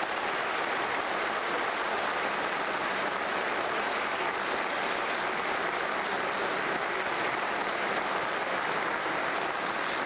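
Sustained applause from a large group of members of parliament clapping steadily in the chamber.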